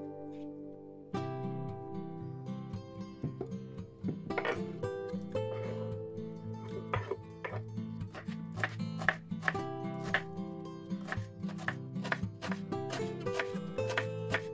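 Background music with a kitchen knife chopping green onions on a wooden cutting board: repeated sharp taps of the blade against the board from about four seconds in.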